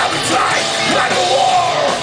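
A death metal band playing live and loud: distorted guitars and drums with the vocalist's voice over them, recorded from within the crowd.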